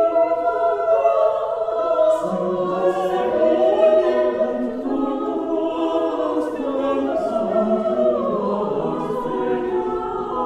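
Mixed chamber choir of men and women singing a cappella in a stone church, holding sustained chords; a lower part enters about two seconds in.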